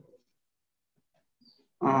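Near silence, then a man's voice starts near the end.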